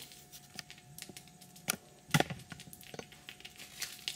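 Fingers picking apart expanding spray foam and crinkling masking tape: faint scattered crackles and tearing, with a couple of sharper snaps about halfway through. The foam is not yet fully cured inside.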